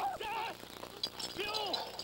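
A man crying out and whimpering in fright while being wrestled down and pinned, with a short sharp crack or clatter about a second in.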